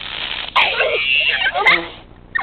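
Aerosol Silly String can spraying straight at the microphone: a hiss that builds, with a short click about half a second in and a person's startled "oh" near the end.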